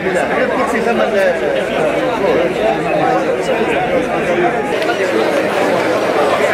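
A crowd of men chattering, many voices talking over one another in a steady babble.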